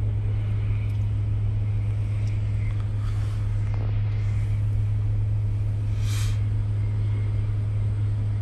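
A steady, unchanging low engine hum over faint background noise, with a brief hiss about six seconds in.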